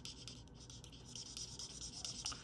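Faint scratching of a Stampin' Blends alcohol marker's tip rubbing over cardstock in short, irregular colouring strokes.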